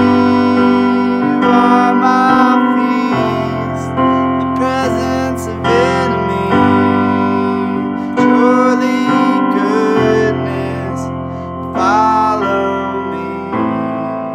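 Digital piano playing sustained chords in a slow ballad accompaniment, a new chord struck every second or two.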